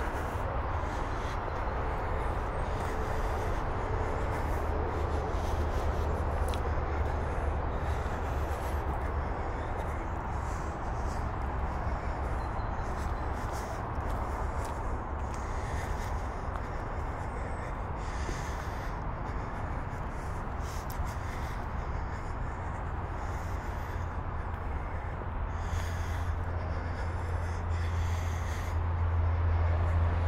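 Steady roar of nearby freeway traffic, with faint footsteps crunching over leaf litter and twigs on a forest path.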